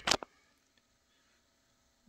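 Near silence: faint room tone with a low steady hum, right after the end of a spoken word.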